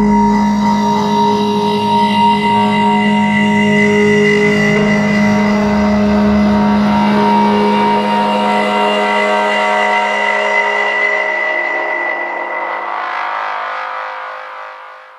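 Electronic music: a loud, sustained, distorted synth drone of several held pitches with no beat, fading out near the end.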